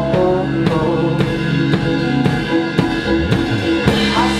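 A live rock band playing, led by the drum kit: a steady beat of about two strong hits a second with cymbals, over sustained low instrument notes.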